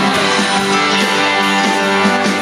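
Live rock band playing an instrumental passage with no vocals: electric guitars strumming over keyboard and drums, loud and steady.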